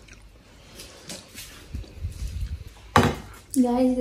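Faint kitchen handling noises with a few small ticks, then a sharp knock about three seconds in, followed by a person's voice starting near the end.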